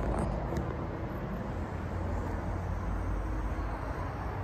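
A steady low rumble of outdoor background noise, with a couple of faint clicks in the first second.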